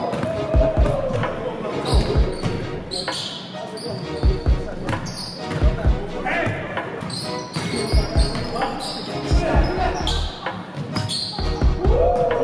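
A basketball being dribbled on a hardwood gym floor, low thumps coming in quick runs throughout, with short high squeaks of sneakers on the court and players' voices calling out now and then.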